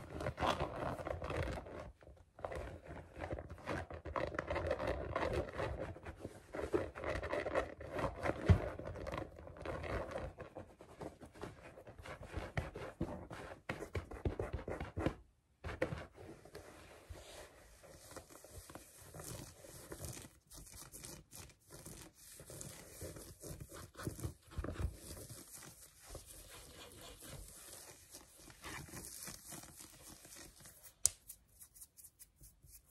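Fingernails scratching and rubbing quickly over a fuzzy tufted rug and soft fabric, a dense run of scratchy rustles. It is fuller and louder in the first half, breaks off briefly about halfway, then goes on quieter and finer.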